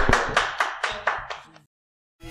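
Hands clapping in a steady rhythm, about three to four claps a second, fading out and stopping about a second and a half in.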